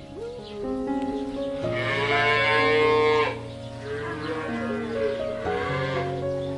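A cow mooing: one long moo of about a second and a half starting nearly two seconds in, over light background music.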